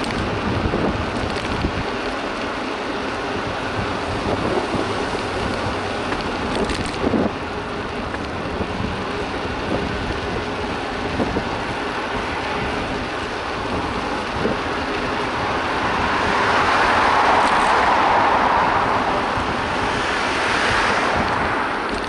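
Wind buffeting the microphone of a bicycle-mounted action camera, over tyre and road noise from riding on asphalt, with a few short rattles from the bike in the first several seconds. A louder rush of noise rises and falls near the end.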